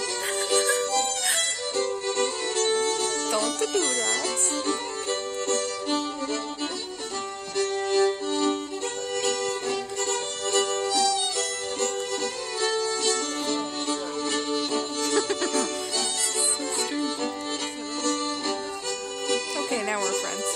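A small group of fiddlers playing a lively Swedish folk dance tune live, with steady bowed melody lines that change note every second or so.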